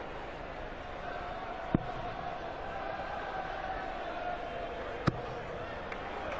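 Steel-tip darts striking a bristle dartboard: two sharp thuds about three seconds apart, over a steady arena crowd murmur.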